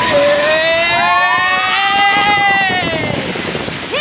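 A loud whistle sounding several pitches at once, like a chime whistle: it slides up as it opens, holds for about three seconds, then slides down and fades out.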